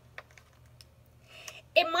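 A page of a hardcover picture book being turned by hand: a few faint paper clicks and a brief rustle. A woman starts speaking near the end.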